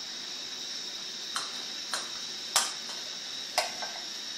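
Steady hiss of a Bunsen burner running on a butane gas cartridge, with about five short sharp clicks and ticks, the loudest about two and a half seconds in.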